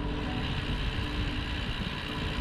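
Steady wind rumble on the microphone and tyre hiss from a loaded touring bicycle rolling along an asphalt road.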